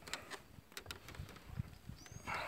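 Faint, scattered light knocks and clicks as a person moves about on a plywood deck with a handheld camera: footsteps and handling noise.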